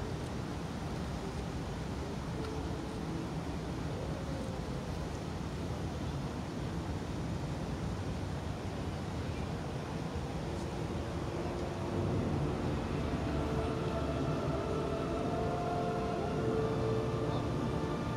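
A steady low rumble of outdoor background noise. About twelve seconds in, faint distant music from the light show's sound system comes in and holds on.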